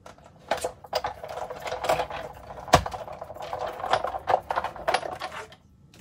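Big Shot die-cutting machine being hand-cranked, with the plate sandwich and dies rolling through the rollers in a steady grinding run with many small clicks and one sharp knock near the middle. It stops shortly before the end.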